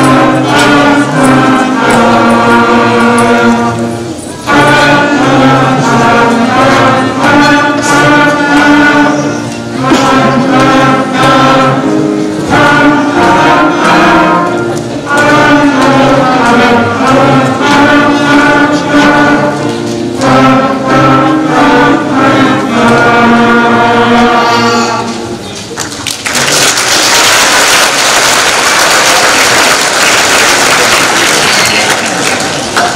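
Elementary school wind band of flutes, clarinets and trumpets playing a piece in short phrases with brief breaks between them. The music ends about 26 seconds in, and the audience breaks into applause.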